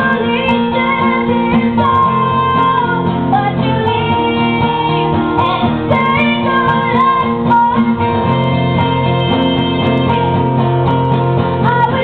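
A woman singing lead, holding and bending long notes, over three acoustic guitars being strummed and picked in a live acoustic band performance.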